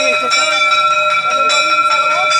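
A loud, continuous bell-like ringing that holds the same pitch throughout, with people talking underneath.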